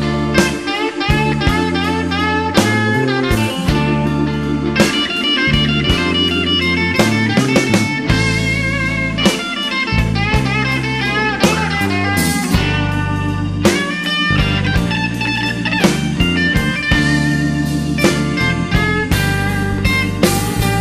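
Electric blues band playing an instrumental passage: a Stratocaster-style electric guitar plays a lead line with bent notes over steady drums and low bass notes.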